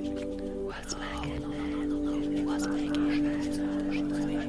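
Soft whispered voices over ambient meditation music, a sustained drone chord of steady tones.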